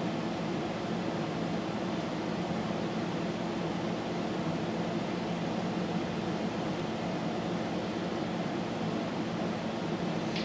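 Steady low hum with a hiss over it, unchanging throughout, with no distinct events.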